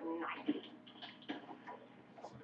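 A few faint, irregular clicks in a quiet room, with a faint voice at the very start.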